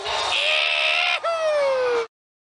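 A man's drawn-out yell: raspy at first, then a single long high howl that slides steadily down in pitch and cuts off suddenly.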